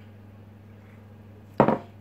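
A ceramic mug set down on a wooden worktop: a single sharp knock about one and a half seconds in, over a faint steady hum.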